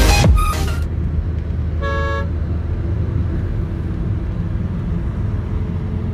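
Steady low road and engine rumble inside a moving car's cabin, with one short vehicle horn toot about two seconds in.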